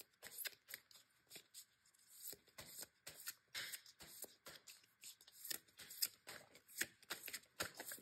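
A deck of oracle cards being shuffled by hand: quiet, irregular soft clicks and flicks of the cards sliding against each other.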